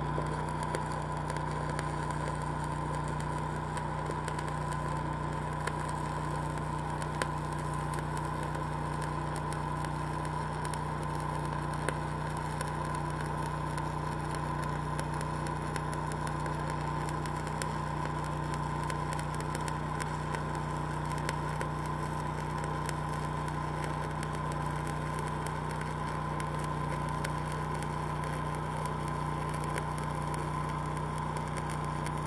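Stick-welding arc from an eighth-inch 7018 electrode crackling steadily through a flat fillet weld, over the steady running of a Lincoln Ranger engine-driven welder under load.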